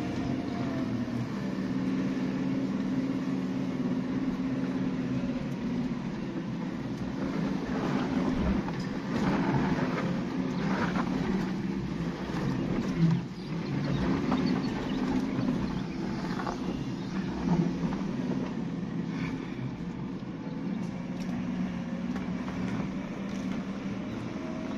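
Suzuki Jimny's 1.5-litre four-cylinder petrol engine running steadily at low speed, heard from inside the cabin. Knocks and rattles come as the vehicle jolts over the rocky track, the loudest about halfway through.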